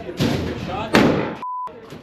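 Two gunshots about three quarters of a second apart, each echoing in the enclosed indoor range. Near the end comes a short single-tone censor bleep, with all other sound cut out under it.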